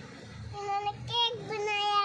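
A child's high-pitched voice singing a few short notes, starting about half a second in, with the last note held.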